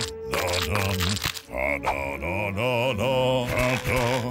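A man singing long, wavering notes with heavy vibrato over a low sustained accompaniment, with a brief break about a second and a half in.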